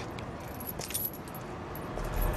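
Iron chain links jingling quietly, with a few light metallic clinks spread through the moment.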